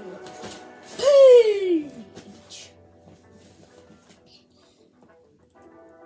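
A child's voice makes one long, falling wordless cry about a second in. Faint background music follows.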